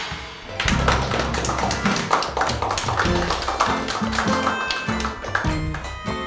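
A small rock band of electric guitars and a drum kit playing, with a steady drum beat and a stepping bass line; the music comes in about half a second in.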